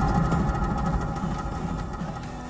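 A low rumble with faint sustained tones above it, slowly fading away: a film soundtrack effect or score swell.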